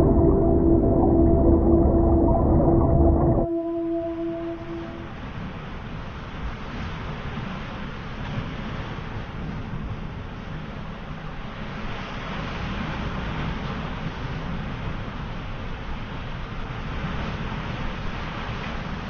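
A loud, low droning ambient sound with a few held tones cuts off suddenly about three and a half seconds in, its tones trailing away over the next second or so. After it comes steady outdoor beach noise: wind and surf.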